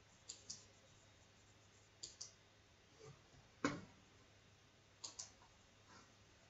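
Faint computer mouse button clicks, several in quick pairs, with one louder single click a little past halfway.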